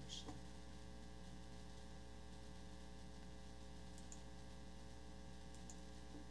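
Faint, steady electrical mains hum on the meeting's audio feed, with a few faint clicks and no voice coming through: the presenter's microphone has dropped out.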